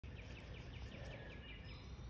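Faint outdoor ambience with a low rumble, over which a bird gives a quick run of high chirps, about six a second, through the first second, then a couple of short high whistled notes near the end.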